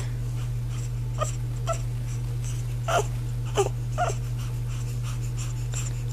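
A hungry newborn baby making a handful of faint, short whimpers and grunts, spread out over a few seconds, over a steady low hum.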